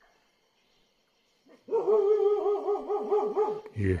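A dog giving one long, wavering howl that lasts about two seconds, starting about one and a half seconds in.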